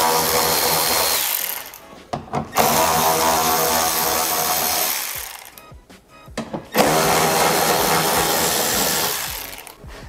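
Cordless electric ratchet running in three bursts of about two to three seconds each, with short pauses between, as it spins out the 10 mm bumper bolts in the wheel well.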